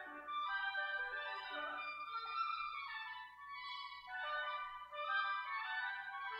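Two oboe-family double-reed woodwinds playing a duet, their two melodic lines weaving around each other in a steady flow of notes.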